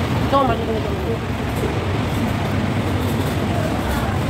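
Steady low rumble of city traffic, with faint voices under it and a brief spoken word near the start.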